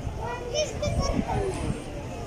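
Indistinct chatter of several people in an outdoor market, with a high-pitched voice rising above it about half a second in, over a low rumble.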